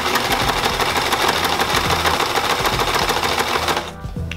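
Electric domestic sewing machine running at speed, stitching a seam through fabric: a fast, even rattle of needle strokes over the motor's hum, stopping just before the end.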